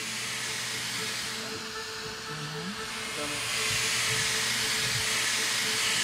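Oxygen hissing steadily into a high-altitude pressure suit and its helmet as the regulator valve is opened to pressurise the suit; the hiss grows louder about three and a half seconds in.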